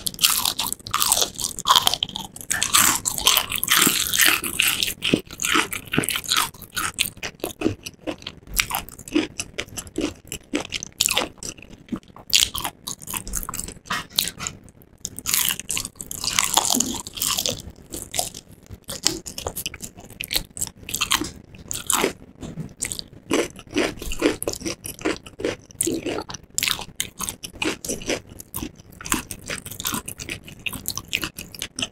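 Close-miked biting and chewing of crispy battered fried chicken, with dense crackling crunches. The loudest bursts of crunching come about two to five seconds in and again about halfway through.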